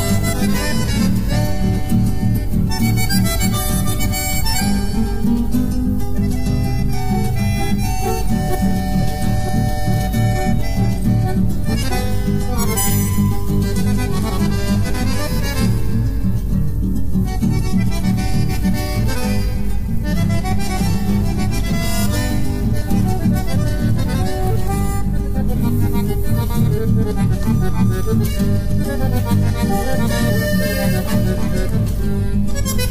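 Instrumental polca correntina played on accordion and bandoneón over guitar accompaniment, at a steady beat with no singing.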